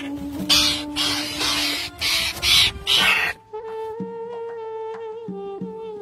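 A captive raptor gives a series of harsh, rasping screeches, about six short bursts over the first three seconds. Background music with a steady drone runs under them and carries on alone with a plucked melody.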